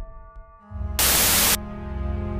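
A half-second burst of loud white-noise static about a second in, a glitch-style transition sound effect, over low sustained music tones that begin just before it.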